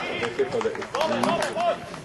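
Voices of men and youths calling out on a football pitch, loud and raised, stopping shortly before the end.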